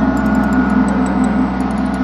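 A sustained low ringing note with many overtones from the film's added soundtrack, holding steady and slowly fading, with faint rapid ticking high above it.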